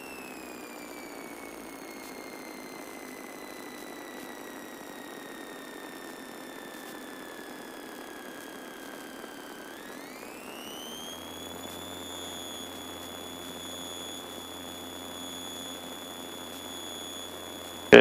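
Piper Seminole's engine whine heard through the cockpit intercom, sinking slowly for about ten seconds with the power at idle in a power-off stall. It then climbs quickly and holds steady with a low engine hum underneath as power is added for the recovery.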